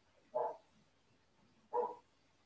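A dog barks twice, short single barks a little over a second apart.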